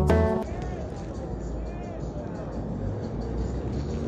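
Intro music cuts off about half a second in, giving way to city street ambience: traffic noise with faint voices.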